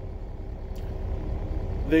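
Diesel engine idling, a low steady rumble with a faint steady hum, heard from inside a truck's sleeper cab.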